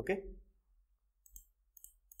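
A few short computer mouse clicks in the second half, after a single spoken word.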